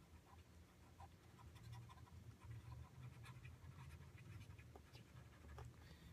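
Near silence: low room hum with a few faint light ticks.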